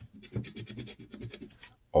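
A large coin scraping the scratch-off coating off a lottery ticket in quick, repeated strokes.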